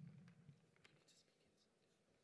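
Near silence: faint room tone over a sound system, with a few soft ticks and rustles.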